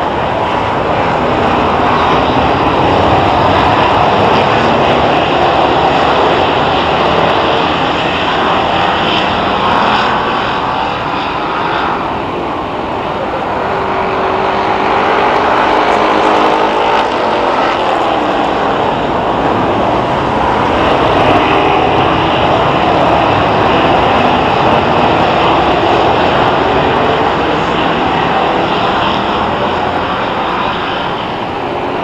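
A field of Hoosier Stock dirt-track stock cars racing under green, their engines running together in a continuous drone. The sound dips about twelve seconds in as the pack moves to the far side of the oval, with a few single engine notes standing out. It then builds again as the cars come back around.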